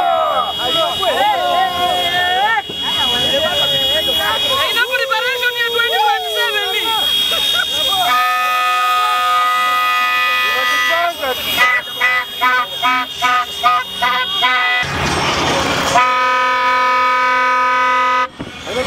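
Vehicle horns honking in a dense motorcade, over shouting voices in the first several seconds. A long held horn blast comes about eight seconds in, then a run of short toots about two a second, then another long blast near the end.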